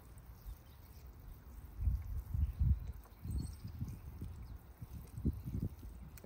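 Water sprinkling faintly from a watering can's rose onto grass, under irregular low thuds and rumbles that come loudest about two seconds in and again near the end.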